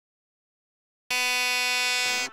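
Silence, then about a second in a loud, steady buzzer-like tone starts abruptly and holds.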